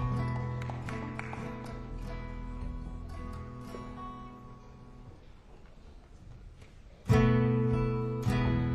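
Acoustic guitar and acoustic piano playing the slow opening chords of a song: a chord rings and slowly fades over about five seconds, then a louder chord is struck about seven seconds in.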